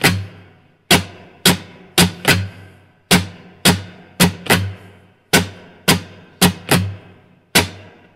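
Muted strums on an acoustic guitar: short percussive chunks rather than ringing chords, in a strumming pattern repeated about four times. Each cycle has four hits, the last two close together, with one strum tied over beat three.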